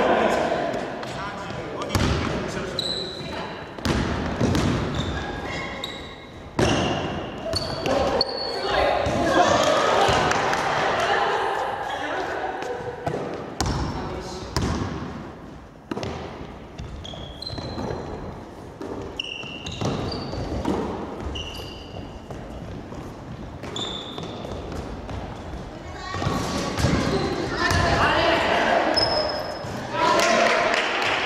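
A basketball bouncing and thudding on a hardwood gym floor during play, with short high sneaker squeaks and players' voices, echoing in a large hall.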